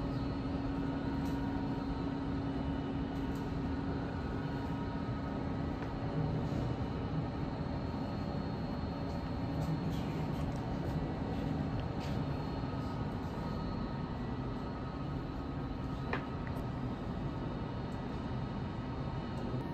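Steady low rumble and hum of indoor room tone, with a few faint steady tones and a faint click about sixteen seconds in.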